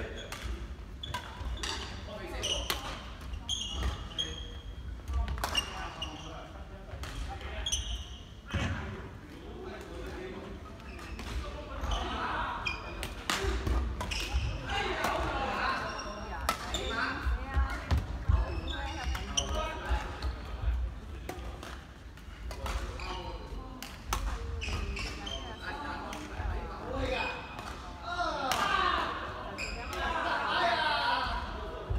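Badminton rackets hitting a shuttlecock through a doubles rally, as a series of sharp clicks, with court shoes squeaking and footfalls on a wooden hall floor. Indistinct voices echo around the sports hall.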